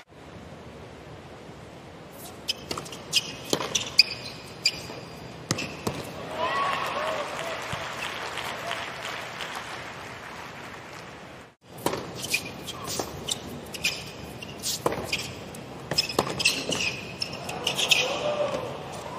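Hard-court tennis rally: sharp racket-on-ball strikes and ball bounces with sneakers squeaking on the court, over crowd murmur. There are two stretches of play, split by a brief cut in the sound about two-thirds of the way through.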